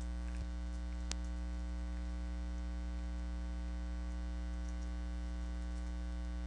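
Steady electrical mains hum, with one faint click about a second in.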